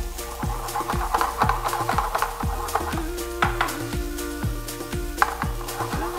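Diced onion and minced garlic sizzling in a frying pan as a wooden spatula stirs and scrapes them through. Background music with a steady beat of about two kicks a second runs underneath.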